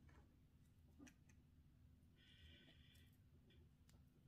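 Near silence: room tone with a few faint small clicks and a brief faint high-pitched tone about two seconds in.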